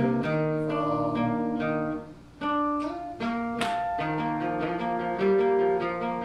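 Cutaway acoustic guitar played solo, single notes picked and left to ring, with a brief pause about two seconds in and one hard strum a little past halfway.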